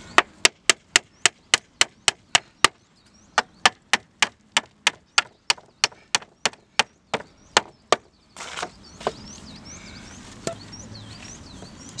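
A hammer driving nails through a reclaimed pallet-wood plank, a fast steady run of sharp strikes about four a second. There is a short pause near the third second, then a second run that stops about eight seconds in, followed by a couple of lone knocks.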